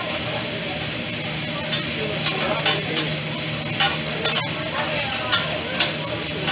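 Shrimp and scallops sizzling on a hot teppanyaki griddle, a steady hiss, with the chef's metal spatula and fork clicking and scraping against the steel plate in quick, irregular strikes from about two seconds in.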